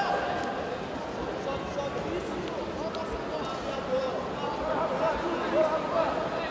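Spectators in a large sports hall chattering and calling out, many voices overlapping at once with no single clear speaker.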